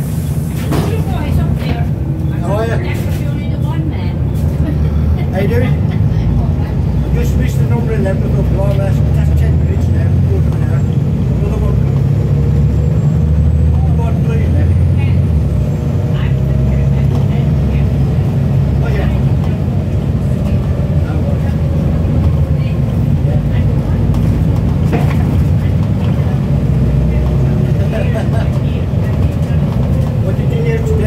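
Volvo B7TL double-decker bus heard from inside the lower deck while under way: its Volvo D7C six-cylinder diesel and drivetrain give a steady low rumble, with a faint whine drifting slightly in pitch through the second half.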